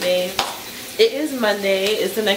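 Food frying in a pan on the stove, a steady sizzle, with a woman's voice over it.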